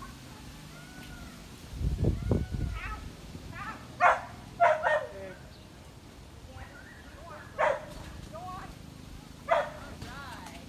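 A dog barking in short, sharp single barks, about five spread over several seconds, with a low rumbling thump shortly before the first bark.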